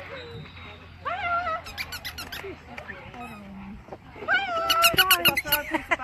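Dog-show squeaky toy squeezed in quick repeated squeaks to bait a Rottweiler in the line-up: a short run about a second in and a longer, louder run starting a little after four seconds.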